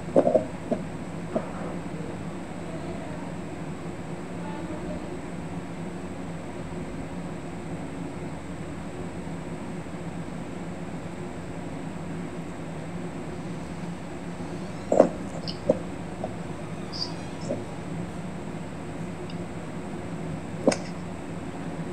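Steady low background hum with no speech. A few short sharp clicks or taps come in just after the start, and another small cluster comes a little past the middle toward the end.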